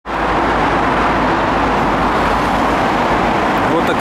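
Riding noise from a Yamaha XT1200Z Super Tenere motorcycle under way: a loud, steady rush of wind and engine running.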